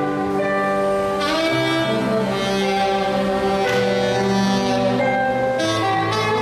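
Saxophone playing a slow melody of long held notes, changing about once a second, over an electronic keyboard accompaniment of sustained chords and bass notes.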